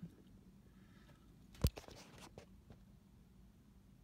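Faint low steady hum with one sharp click about a second and a half in, followed by a few fainter ticks.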